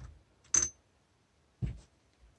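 Handling noises from removing a fill probe and hose from an air rifle's gas ram fill port: a tiny click at the start, a sharper metallic click with a brief high ring about half a second in, and a soft knock near the end.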